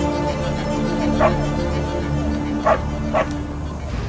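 A small dog barks three times, once about a second in and twice near the end, over background music with held notes.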